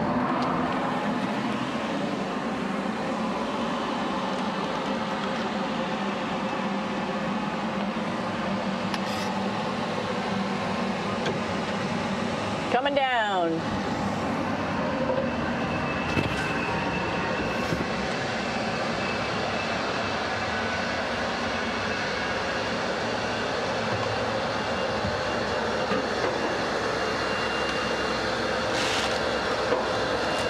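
Steady whir of the International Space Station's cabin ventilation fans and equipment. About 13 seconds in, a brief sweeping sound with falling pitch is the loudest thing. From about 16 seconds on, a faint thin whine holds steady over the hum.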